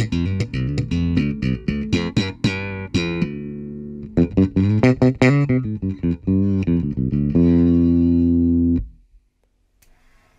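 Electric bass guitar played through a Gallien-Krueger Fusion 550 tube-preamp bass head and GK cabinet: a fast run of plucked notes with sharp attacks, then a long held low note that is cut off abruptly about a second before the end.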